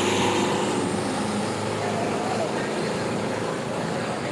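Tractor diesel engines running hard under full load in a tug-of-war, a steady engine drone.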